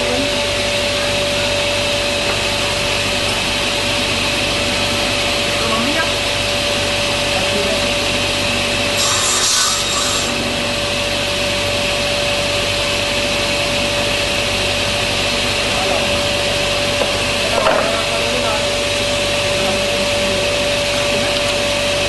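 A G Paik sliding-table saw running steadily, its motor and spinning blade giving a constant whine over a steady rush of noise. About nine seconds in the sound turns briefly hissier, and a short click comes near the end.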